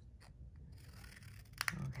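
Scissors snipping through a paper strip, with the sharpest snip about a second and a half in.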